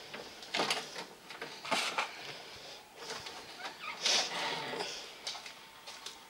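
VCR deck loading a VHS cassette: a series of soft mechanical clunks and whirs about a second apart as the mechanism threads the tape and starts playback.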